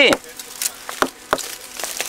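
A stone knocking against the bark of an old olive trunk, several sharp, irregular strikes a third to half a second apart. The burls are being struck to wound ('bleed') the bark so that sap gathers there and new shoots sprout.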